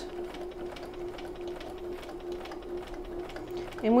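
Bernina sewing machine stitching steadily through fabric and zipper tape, its motor running at an even speed with a steady hum.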